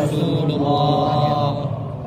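A large crowd of men repeating a pledge formula in unison after a leader, a thick mass of voices that dies away about a second and a half in.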